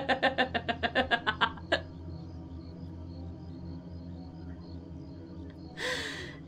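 A woman laughing maniacally in rapid, breathy pulses for about a second and a half before stopping abruptly. A low, steady background drone carries on after it, with a short breathy burst near the end.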